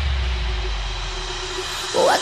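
A steady, noisy rumble like a jet-engine whoosh that slowly fades, with a faint held low tone under it, in a break in the backing music.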